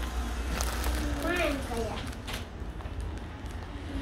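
A child's voice, a short quiet phrase about a second in, with a few light knocks and rustles from children playing.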